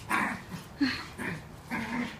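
Two dogs vocalizing in rough play, a husky and a small Maltese-Shih Tzu mix: about four short calls roughly half a second apart.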